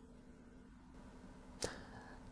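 Near silence with a faint steady hum, broken by one short sharp click about one and a half seconds in, followed by a brief faint hiss.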